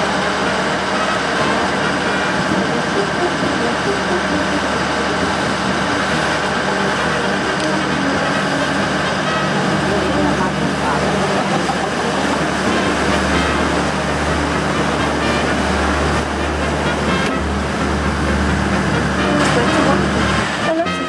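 Open canal tour boat's engine running steadily under a mix of indistinct voices; the low hum grows louder for several seconds from about halfway through as the boat passes beneath a low bridge.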